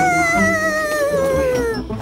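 A cartoon ghost's long wavering wail, its pitch sinking near the end and fading out just before the end, over background music.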